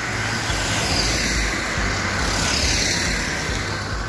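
Small hatchback car driving past close by on the road, a steady noise of tyres and engine that swells and sweeps down in pitch as it goes by.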